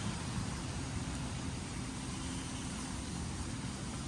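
Steady outdoor background noise: an even low rumble with a soft hiss and no distinct events.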